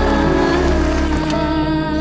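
A car coming to a stop, with a high thin squeal for about a second, while soft background music carries on underneath.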